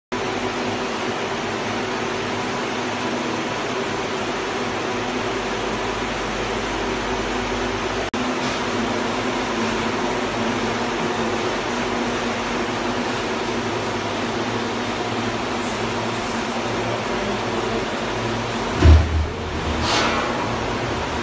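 Darin pet-treat injection molding machine running, a steady machine hum with a few held tones over a noisy drone. One heavy low thud sounds near the end.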